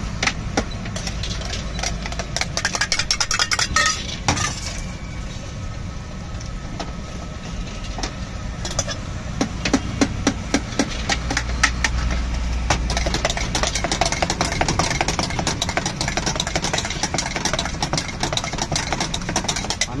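A steel spoon clinking and scraping rapidly against a small steel vessel as a filling is mixed, many quick clinks throughout, over a low steady rumble.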